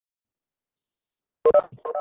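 Silence, then about a second and a half in, a quick run of four short electronic beeps, each a blend of two or three steady pitches.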